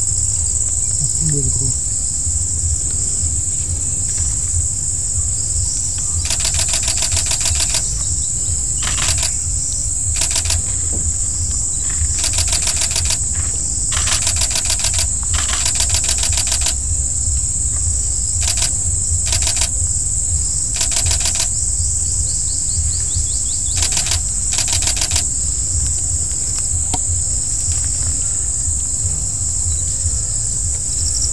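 A steady high-pitched drone of insects, broken through the middle by about a dozen rasping, rapidly pulsed insect bursts of a second or two each, over a low steady rumble.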